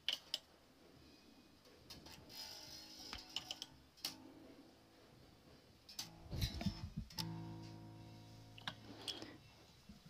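Fender Mustang bass's freshly fitted A string (D'Addario EXL170S) plucked a few times while it is tuned up to A, each note ringing faintly and fading, with a few light clicks between.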